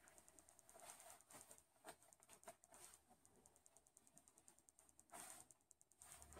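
Near silence: room tone with a few faint ticks and a brief faint rustle near the end.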